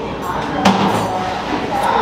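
Background chatter of voices in a busy restaurant, with one sharp click about two-thirds of a second in.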